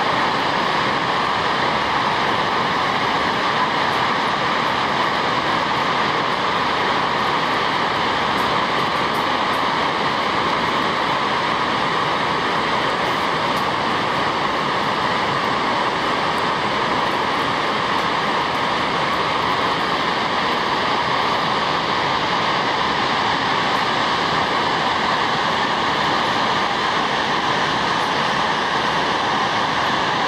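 Shoshone Falls, a large waterfall on the Snake River, pouring over its rock rim into the plunge pool: a steady, unbroken rush of falling water.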